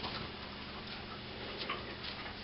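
Faint, irregular ticks and short sniffs from a collie searching nose-down on carpet, over a low steady hum.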